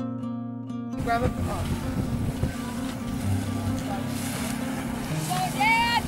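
Plucked-string music cuts off about a second in. A boat engine then runs with a steady drone under wind and water noise, and a voice calls out near the end.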